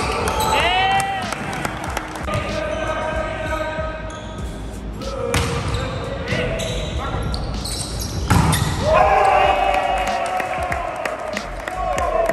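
Indoor volleyball play: sharp slaps of the ball being served, passed and hit, sneakers squeaking on the gym floor, and players shouting calls to each other, loudest near the end.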